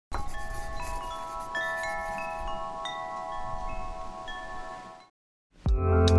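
Wind chimes ringing: metal tubes struck at irregular moments, their clear tones overlapping and sustaining, fading out about five seconds in. After a short silence, louder music starts near the end.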